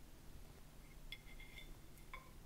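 Near silence broken by faint clinks of metal cutlery against dishware: one light ringing clink a little after halfway, then a few quicker, lighter ticks.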